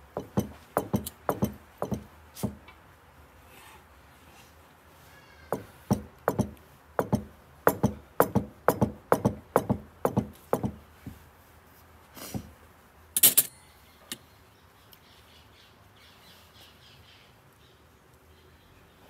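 A fork pressing a pastry lid down around the rim of a ceramic casserole dish: a run of dull knocks, about two a second, in two bursts with a short pause between. A sharper, brighter clack comes about three quarters of the way through.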